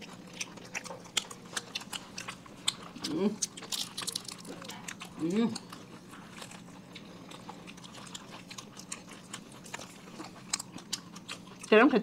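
Close-miked eating sounds of several people biting and chewing burgers and tacos: a steady run of small wet clicks and crunches. A short hum comes twice, and a voice starts near the end.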